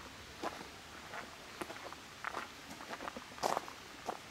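Footsteps on a gravel path at a walking pace: short crunches about every half second, the loudest about three and a half seconds in.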